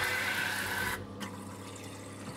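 Water running hard from a pump-fed kitchen faucet into a stainless steel sink, cutting off suddenly about a second in.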